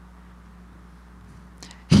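Quiet pause with a steady low hum from the room and sound system, then a man's amplified voice starts again just before the end.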